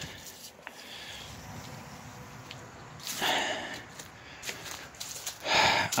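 A man's breathing, with a short breath about three seconds in and another just before the end, over a low, even background.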